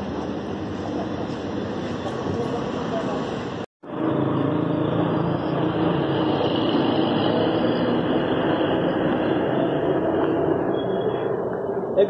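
Dense hubbub of a crowd, many voices mixed into a steady din, broken by a split-second dropout about four seconds in before it resumes.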